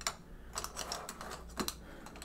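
A run of light, irregular clicks and taps as a hand works small objects just off to the side.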